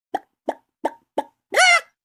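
Edited-in intro sound effect: four quick pops about a third of a second apart, then a short, louder pitched tone that bends up and back down.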